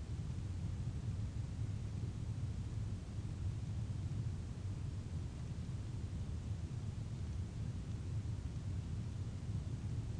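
Steady low rumble of background room noise picked up by the recording microphone, with no distinct events.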